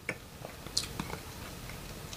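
Faint wet mouth clicks and lip smacks as a mouthful of red wine is tasted, with a brief hiss a little before halfway.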